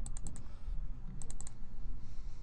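Light clicking at a computer in two quick runs of four clicks each, one at the start and one about a second later, over a low steady hum.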